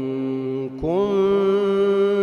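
A man's voice in melodic Quran recitation (tajwid), drawing out a long held note with a slight dip, then gliding up just under a second in to a higher note held steady.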